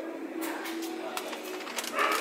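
Green apples handled in a wooden produce crate, giving a few light knocks, over a low, steady cooing or humming tone in the background.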